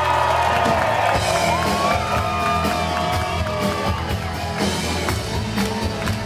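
Live rock band heard from within the audience in a concert hall: a held low chord dies away about half a second in while the crowd whoops, then drums and keyboards carry on.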